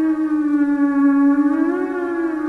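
Theremin-style electronic tone from a sci-fi intro theme: one held note with a rich, reedy sound that wavers slowly, dipping and then rising again near the end.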